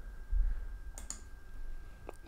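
Two soft computer clicks, about a third of a second and about a second in, over a faint steady high-pitched whine.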